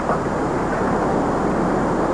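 Steady, loud rumble from a building implosion as the dust cloud of the collapse rolls out, with a slight jolt just after the start.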